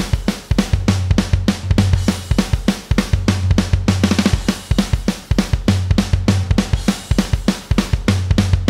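Programmed MIDI rock drum kit playing a loop: fast, even hits with cymbals throughout and a deep low note coming and going. The toms are set to a 50% chance, so only some of the tom notes sound on each pass of the loop.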